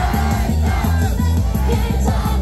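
Female idol group singing a J-pop song into microphones over a loud backing track with a steady heavy bass beat, heard through a live club PA, with the crowd shouting along.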